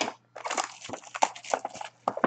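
Wrapping on a box of trading cards being torn open and crinkled: dense crackling with sharp snaps that starts about half a second in.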